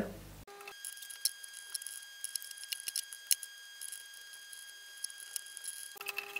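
Light clicks and small rattles of plastic bulb holders and coloured bulbs being handled, with one sharper click a little past the middle, over a faint steady high-pitched whine.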